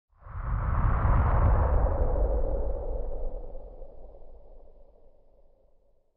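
A whooshing sound effect with a deep rumble underneath, swelling up within the first second and then slowly fading away over about five seconds.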